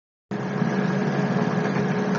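Steady low hum with hiss, cutting in abruptly about a third of a second in after dead silence and holding steady.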